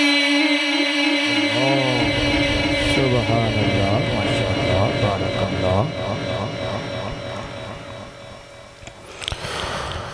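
Male voice in melodic Quran recitation (tilawat) through a public-address system with heavy echo: a long held note gives way to ornamented, wavering phrases that die away in the echo toward the end.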